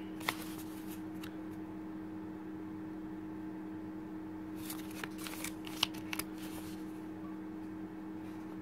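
A plastic (polymer) New Zealand $5 banknote crinkling as it is handled and turned over by hand: a couple of short crackles about a second in, then a burst of crinkling around five to six seconds, over a steady low hum.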